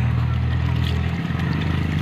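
An engine running nearby with a low, steady drone, its pitch shifting slightly about halfway through.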